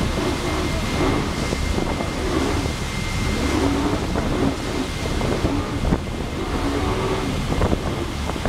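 Wind buffeting the microphone over rushing water and spray from boats running at speed, with a steady low engine rumble beneath and a thin steady whine throughout.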